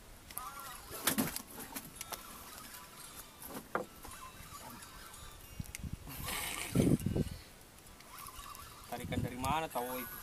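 Brief wordless voices near the start and again near the end, with scattered knocks and a louder low rumbling thump about seven seconds in.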